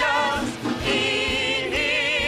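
A woman singing a worship song into a microphone, in a Korean traditional (gugak) style arrangement: held notes with vibrato, in three phrases broken by short breaths.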